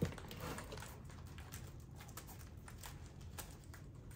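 Faint, irregular light taps and clicks of a ring binder and envelopes being handled on a desk.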